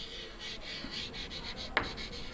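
Chalk scratching across a blackboard in short writing strokes, with one sharper click near the end.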